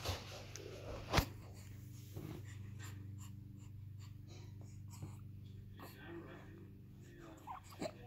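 Faint small sounds from a young baby, soft breaths and a short coo near the end, over a steady low room hum, with one sharp click about a second in.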